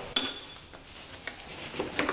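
Metal engine parts clinking in a plastic tub: one sharp clink with a short high ring just after the start as a part is dropped in, then faint clicks and small rattles as gloved hands sort through the parts.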